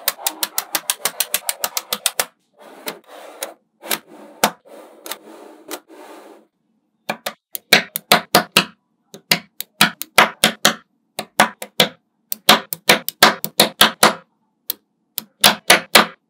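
Small magnetic balls clicking sharply as they snap onto one another, in quick runs of clicks. A softer rattling stretch falls in the middle.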